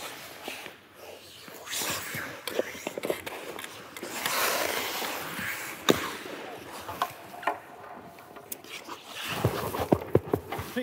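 Ice skates scraping across rink ice, with a sharp crack about six seconds in as a hockey stick strikes a tennis ball toward the net, and a few lighter taps of stick and ball after it.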